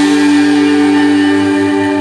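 Electric guitars and bass holding a final sustained chord that rings out after the drums stop, with a wavering low note underneath. A few claps come in near the end.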